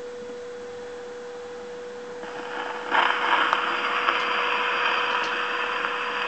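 Steel needle of a Victor talking machine's reproducer set down on a spinning Victor 78 rpm disc record: about two seconds in a soft hiss begins, and about three seconds in it becomes the steady surface hiss of the lead-in groove, with a few faint crackles, before the recording starts.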